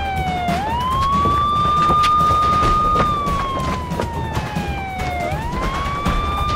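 Police car siren wailing. The tone falls slowly and then sweeps quickly back up, once about half a second in and again near the end, over a low steady rumble.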